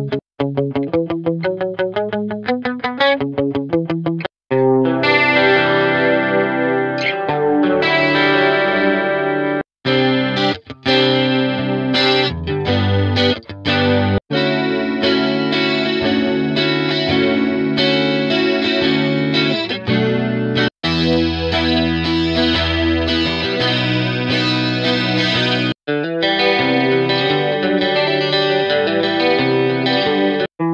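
Guitar sample loops from a pop-guitar sample pack auditioned one after another, each cutting off abruptly as the next begins. The first is a quick picked pattern of single notes; the later loops are fuller, held electric guitar chords.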